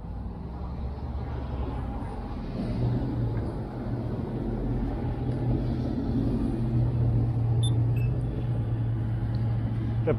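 A car engine running close by at a road intersection: a low steady hum over a rumble, growing louder after the first couple of seconds and holding.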